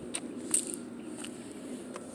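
Handling noise from a phone being swung around: a few short soft clicks and taps over a steady low background hum.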